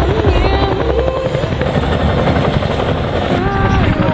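CH-47 Chinook tandem-rotor helicopter flying past, its rotors chopping, with a song and singing laid over it.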